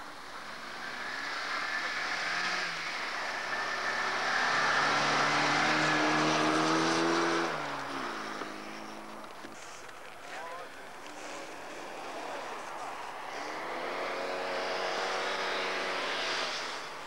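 Rally car engines at high revs on a snow stage. One car's engine climbs in pitch and loudness, then drops off sharply about halfway through as it passes. Another engine rises again near the end.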